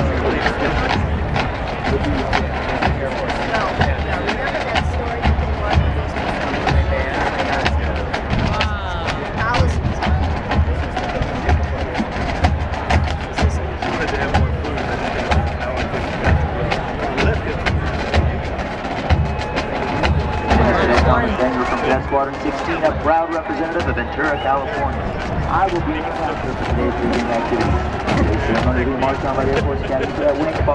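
Marching drum line playing a cadence, a steady beat of bass drums under crisp snare strokes, with the band's horns joining in. Crowd voices chatter over it, more so in the second half.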